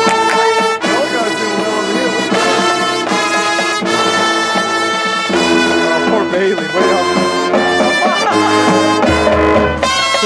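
High school marching band playing its show music: brass chords held over accented percussion hits about every second and a half, with a deep low note coming in near the end.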